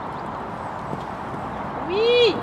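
Pony cantering on a sand arena footing, its hoofbeats soft under a steady outdoor hiss. Near the end a short high-pitched voice call rises and falls.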